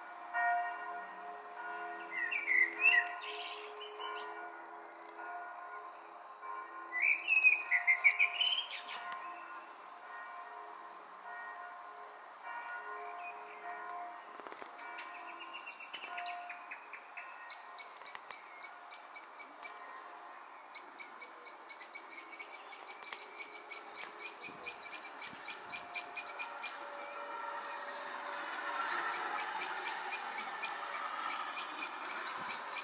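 Bells ringing steadily with several held tones, fading out about halfway through. Over them birds give two loud rising calls early, then a fast, high, repeated chittering through the second half.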